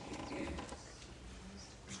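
A pause in a man's speech in a hall: steady low room hum, with a faint, short vocal sound from the speaker about half a second in.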